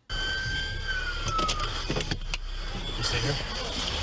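Roadside traffic sound picked up by a police cruiser's dashcam: a steady low engine rumble with a faint high whine that slides down in pitch about a second in.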